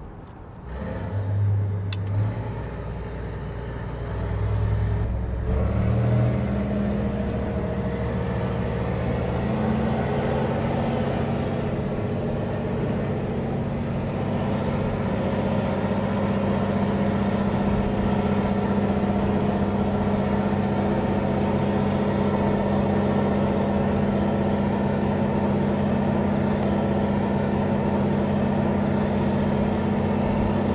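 Tugboat diesel engines throttling up and then holding a steady, deep drone, working astern at half power.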